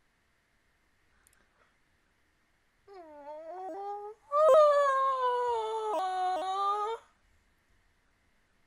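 A woman's muffled, high-pitched squeal behind her hands: a short one about three seconds in, then a longer, louder one that slides down in pitch.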